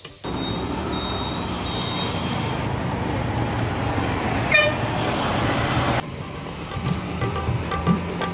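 Street traffic with a motor scooter's engine running, and a vehicle horn toots briefly about four and a half seconds in. The traffic sound cuts off suddenly about six seconds in, leaving quieter background music.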